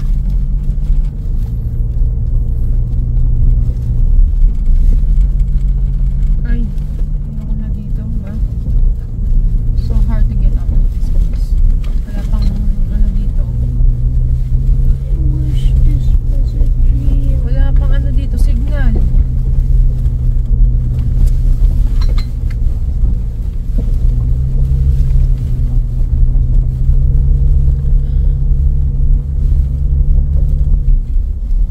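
An SUV's engine and tyres on a gravel mountain track make a steady, loud low drone. The engine note steps down about four seconds in, rises again about halfway through, then drops and rises once more near the end as engine speed changes.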